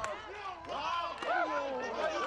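Voices of several people talking and calling out at a football sideline, overlapping and quieter than a close voice.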